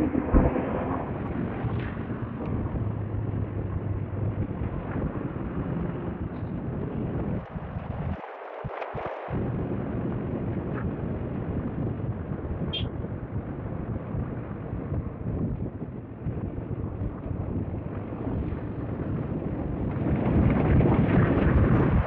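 Wind buffeting a helmet-mounted microphone while riding a TVS Apache motorcycle: a steady rushing rumble, with the bike's running and road noise beneath it. The low rumble drops out briefly about eight seconds in.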